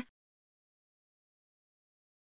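Silence: the soundtrack is empty.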